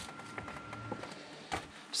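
Faint footsteps on a gravel path, a few soft crunches, with a thin steady high tone in the first half.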